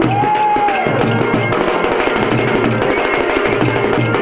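Kolatam folk music with a steady drum beat and the rapid clack of wooden kolatam sticks struck together. A long held note near the start slides down at about one second.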